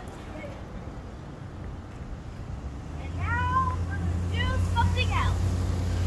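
A child's high-pitched voice making a few short wordless calls, gliding up and down, starting about three seconds in. A low rumble grows louder under them.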